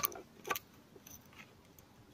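Small metallic clicks of a screwdriver tip poking at steel valve collets inside a socket as they are worked out: a couple of sharp clicks near the start and about half a second in, then a few faint ticks.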